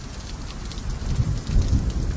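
Outdoor noise: an even hiss with faint light ticks, under an uneven low rumble that grows louder about a second in.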